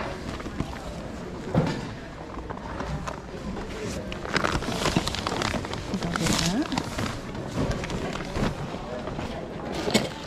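Rustling and handling noise as items go into a cloth tote bag and plastic zip bags of ornaments are picked up and crinkled, over a murmur of voices in a hall.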